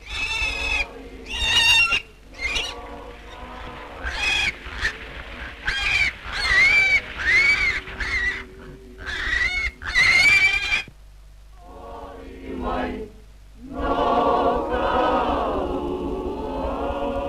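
A rapid run of short, high-pitched cries, each rising and falling in pitch, for about ten seconds. Then a pause, and a group of voices starts chanting near the end.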